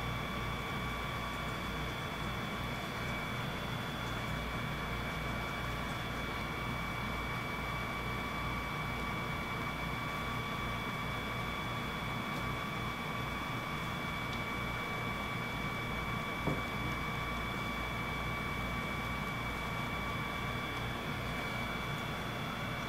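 Steady hiss and low hum with a constant high-pitched electrical whine at several pitches, unchanged throughout, and a single soft tap about sixteen seconds in.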